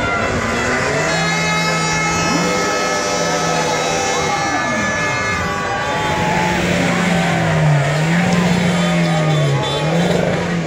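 A car doing a burnout in a crowd: engine held at high revs with a steady tyre squeal, the revs falling about halfway through and then wavering up and down, over crowd voices.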